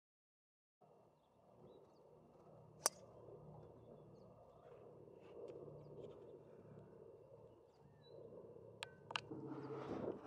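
A golf driver striking a ball off the tee: one sharp crack about three seconds in, after a silent start, over faint outdoor background noise with a few faint bird chirps. Two lighter clicks come near the end.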